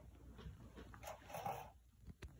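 A cat working at a plastic treat container: faint soft knocks and scuffs, with a louder sound about one and a half seconds in.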